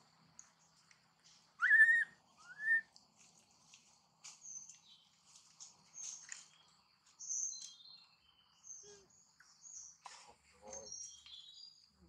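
Birds chirping and twittering throughout, many short high calls, with two louder, short calls about two seconds in, each rising then falling in pitch.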